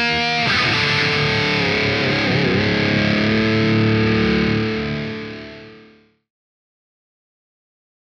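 Distorted electric guitar played through a Marshall Jubilee valve amp: a chord is held and left to ring, with a pitch wobble about two and a half seconds in, then fades out to silence about six seconds in.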